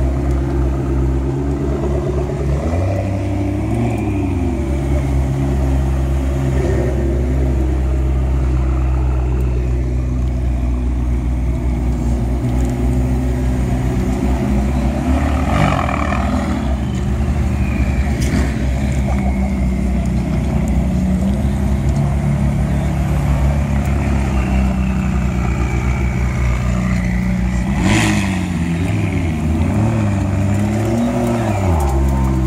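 McLaren twin-turbo V8 engines idling as the cars crawl past at walking pace, the revs rising and falling gently now and then. There is a sharp click near the end.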